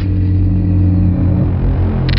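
Cinematic logo-intro sound design: a loud, deep rumbling drone held on steady low tones as the animated logo forms.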